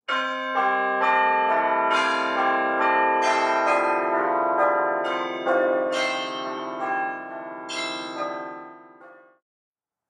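A peal of church bells, with overlapping strikes about every half second that keep ringing on. It dies away shortly before the end.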